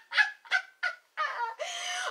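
A woman laughing: three or four short, quick bursts of laughter, then a longer voiced laugh near the end.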